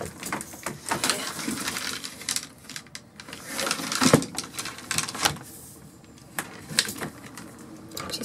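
Pleated folding screen being pulled across on its track, with a rustling slide and a string of irregular clicks and knocks.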